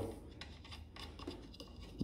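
Faint scratching and light ticks of fingers turning a cap nut by hand on the threaded centre shaft of a Rainbow vacuum's motor-head filter dish, over a low steady hum.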